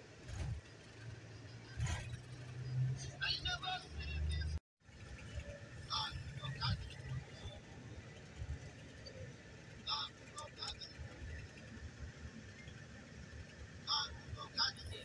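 Interior noise of a moving intercity coach: a steady low engine and road rumble, with short indistinct sounds above it. The sound cuts out completely for a moment about a third of the way in, then the rumble returns.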